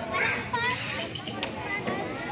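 Several children's voices chattering and calling out in the background, with a few light clicks around the middle.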